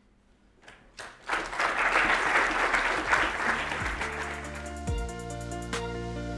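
Audience applause breaks out about a second in, then fades as soft electronic music with held notes and a low beat about once a second takes over near four seconds in.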